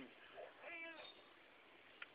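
A cat meows once, briefly, about three-quarters of a second in, against near silence.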